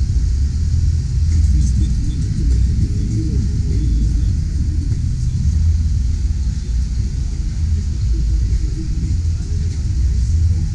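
Wind buffeting the camera microphone: an uneven low rumble that flutters without a steady pitch, with faint crowd voices behind it.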